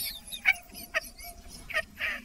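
A woman's short put-on laugh: three brief breathy bursts spread over two seconds, demonstrating a fake laugh.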